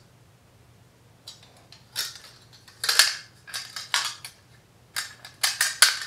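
Folding metal music stand being collapsed by hand: its hinged metal arms clack and rattle in a series of sharp clicks, starting about a second in and ending in a quick cluster near the end.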